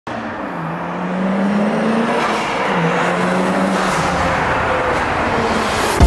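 A single-turbo Mazda FD RX-7's rotary engine driving under load, its note climbing and then dropping back about halfway through, as at a gear change.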